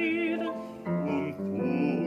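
Male cantor singing a held note with wide vibrato that ends about half a second in; about a second in, piano chords and voices come in again. This is a Yiddish jazz ballad arranged for male voices and piano.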